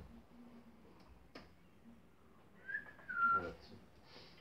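A short high whistle-like sound about two-thirds of the way in: two brief notes, the second a little lower and steadier than the first.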